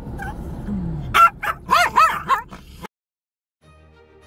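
A dog yipping and whining, with four quick high yips in a row about a second in, over the steady low hum of an idling truck engine; the sound cuts off abruptly near the end.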